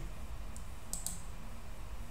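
Computer mouse clicks: a faint click about half a second in, then a quick pair about a second in, over a low steady hum.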